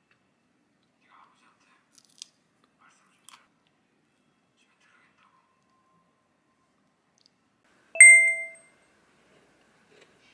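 A few faint clicks of a fork against a ceramic plate while scooping yogurt. About eight seconds in, a single loud, bright ding rings and dies away in under a second.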